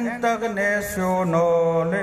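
A man chanting a song verse in long, held notes, his voice stepping from one sustained pitch to the next.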